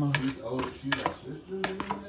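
A knife chopping soft boiled potatoes in a plastic mixing bowl, the blade knocking against the bowl in a few irregular clicks.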